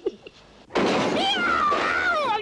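A sudden loud crash of falling crockery about three-quarters of a second in, with a cartoon cat yowling in pain over it, the cry wavering up and down in pitch: the cat is scalded by hot water from a toppled teapot.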